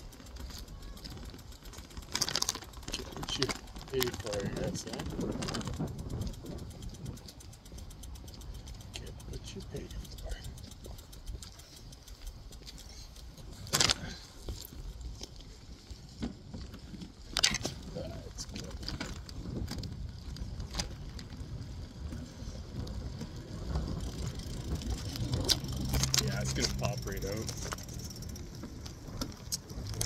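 Phone in a loose bicycle handlebar mount rattling and knocking over bumps while riding, over a constant low rumble. Sharp knocks come now and then, the loudest about halfway through, and a steady low hum rises near the end.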